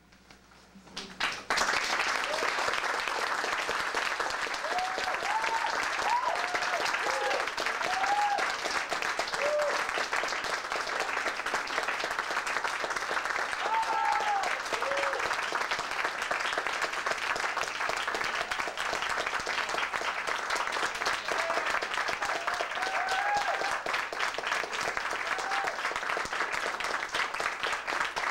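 Audience applauding, breaking out suddenly about a second in and keeping up steadily, with short whooping cheers rising above the clapping several times.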